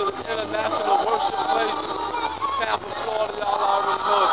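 A man's singing voice over music, the vocal line continuous and sliding in pitch, with a processed, autotune-like quality.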